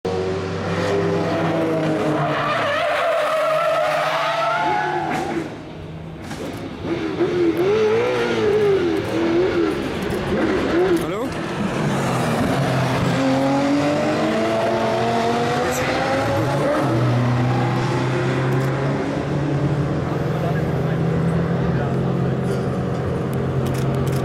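GT3 race car engines running hard on a circuit, their pitch rising and falling repeatedly as the cars pass and shift, with tyres skidding.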